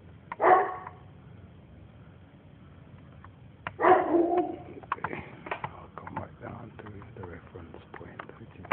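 Two loud animal calls: a short one about half a second in and a longer one about four seconds in. Softer calls and short clicks follow.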